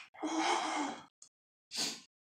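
A man sighing heavily, one long breathy exhale lasting about a second, then a second, shorter breath near the end. The sighs are his reaction to a mouth burning from very spicy chicken wings.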